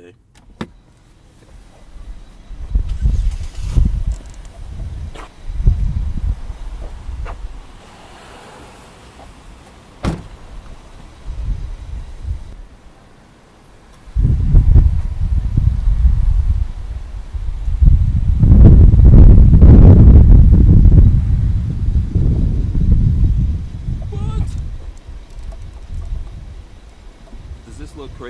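Car on the move with low, uneven rumbling and wind buffeting in loud surges, strongest from about halfway through to near the end.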